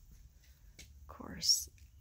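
A person's short whispered utterance about a second in, ending in a sharp hiss, over a faint steady low hum.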